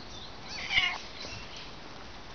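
A domestic cat meows once, a single call of about half a second near the middle.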